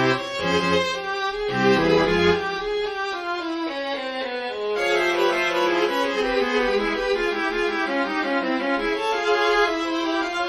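Notation-software playback of a suite for horn and string quartet: bowed strings play running eighth-note lines in a minor key. The low cello line drops out about two and a half seconds in, leaving violins and viola.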